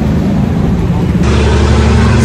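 Steady low rumble of outdoor street background noise. It changes abruptly about a second in, turning brighter and hissier.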